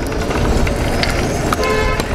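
Kick-scooter wheels rolling on asphalt with wind rumbling on the microphone; about one and a half seconds in, a phone alarm starts sounding a steady electronic tone.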